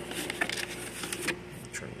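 Light clicks and rustles of hands handling the plastic body of a hang-on-back aquarium filter, over a faint steady hum.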